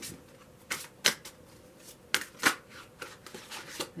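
A tarot deck being shuffled by hand: a string of short card rustles and sharp snaps at uneven intervals, the loudest about a second and about two and a half seconds in.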